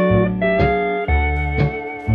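Instrumental fill between vocal lines of a 1953 country song: a steel guitar holds gliding, sustained notes over a bass line that changes note about twice a second.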